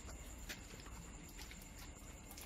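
Faint background hiss with a thin, steady high-pitched tone and a few scattered soft clicks.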